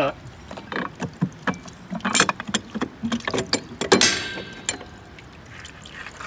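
Metal clanks, knocks and rattles as the steel latch and sliding gate on a fish-transport tank's outlet are lifted open, with a longer hiss about four seconds in.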